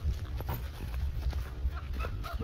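Footsteps and rustling, brushing plants as a person pushes through tall weeds, in a string of short irregular crunches and clicks over a steady low rumble of wind or handling on the microphone.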